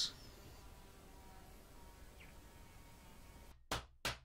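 Faint room tone, then near the end two quick swooshes that sweep down in pitch: an editing transition sound effect.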